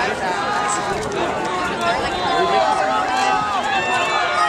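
Crowd of track-meet spectators talking and calling out, many voices overlapping at once.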